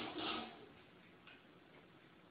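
A door banging open, its sound dying away in the first half second with a softer scrape, then a few faint ticks.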